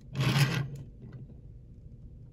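A toy pickup truck being slid across a tabletop: a brief rubbing scrape lasting about half a second near the start.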